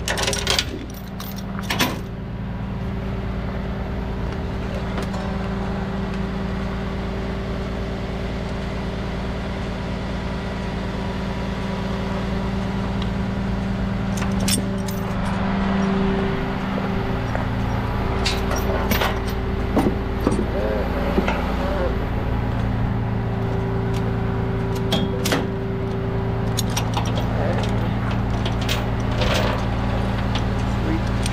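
Heavy tow truck's engine idling steadily, with intermittent metallic clinks and rattles of tie-down hardware, hooks and chains on the steel flatbed deck.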